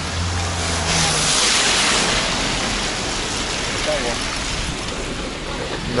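Steady hiss of tyres and traffic on a wet road while riding; a low vehicle hum fades out about a second in. A brief voice is heard near the four-second mark.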